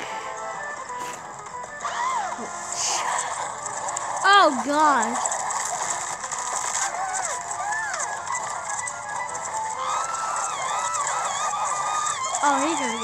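Cartoon soundtrack: background music with high-pitched character voices. The loudest is a short burst of voices about four seconds in.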